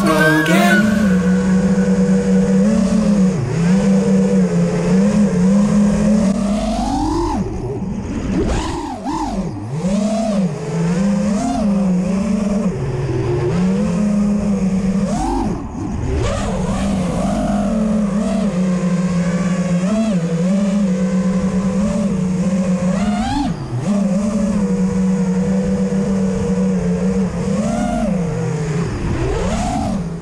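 A 5-inch FPV racing quadcopter's brushless motors and propellers buzz in flight. The pitch keeps rising and dipping with the throttle, with several sharp upward swoops as the pilot punches out.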